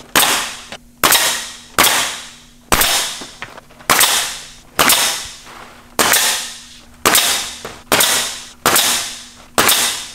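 Pneumatic coil nailer firing nails through synthetic thatch shingles into the wooden purlins, about one shot a second, eleven in all. Each shot is a sharp crack that rings on and fades over most of a second.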